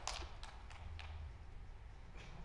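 Applause dying away to a few scattered claps, thinning out over the first second, over a steady low hall hum.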